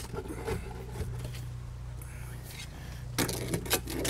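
Shovelled soil and gravel scraping and dropping into a fence post hole as it is backfilled around the post, with a few light clicks early on and denser scraping near the end, over a steady low hum.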